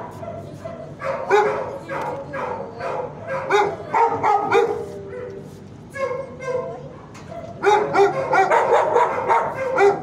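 Several dogs barking and yipping in shelter kennels, short overlapping barks one after another, easing off for a couple of seconds around the middle and picking up again in a dense run near the end.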